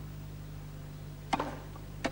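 A tennis ball bounced once on a hard court by the server before serving, a sharp short knock with a brief ring about a second and a half in, over a steady low hum of the broadcast sound; the next bounce starts right at the end.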